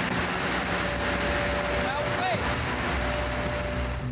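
Steady engine-room noise of a crab fishing boat: the diesel engine running with a low hum, a broad rushing noise and a thin steady whine, joined by a few short rising-and-falling tones about halfway through.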